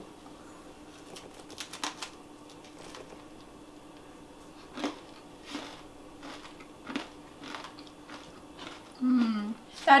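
Two people biting and chewing crisp crackers topped with goat cheese: scattered crunches over a faint steady hum, then a short low hummed "mm" near the end.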